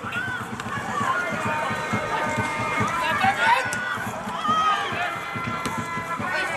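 Live pitchside sound of a football match: several players and spectators shouting over one another, with no commentary.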